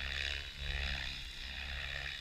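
Blade 700X electric RC helicopter in flight: a steady low drone with the rotor's whoosh swelling and fading about once a second.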